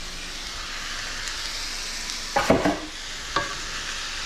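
Stir-fry of tempeh and vegetables sizzling steadily in a hot frying pan. A cluster of knocks comes about two and a half seconds in, with one more knock a second later, as the pan is worked.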